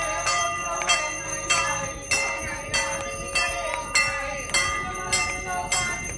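Large brass temple bell rung by hand in a steady rhythm, about ten strikes spaced roughly 0.6 s apart. Each strike rings on into the next, so the tone never stops.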